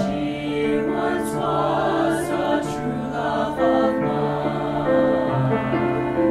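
Small mixed-voice choir of male and female singers singing in harmony, holding sustained chords that change every second or so.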